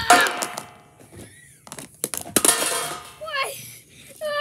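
Plastic toy plates clattering as they are knocked down, in two bursts about two and a half seconds apart, each ringing briefly as the plates settle; the first, at the very start, is the loudest.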